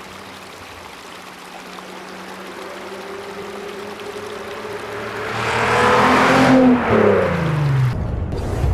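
A 2004 VW Golf R32's 3.2-litre VR6 engine as the car drives past: it grows steadily louder as it approaches, is loudest about six to seven seconds in, then drops in pitch as it goes by.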